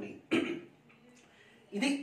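Two short vocal sounds from a man, one about a third of a second in and one near the end, with a near-silent pause between them.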